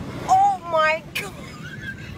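A person exclaims "Oh my God!" in a high, rising voice that goes to a squeal, followed by a short sharp click.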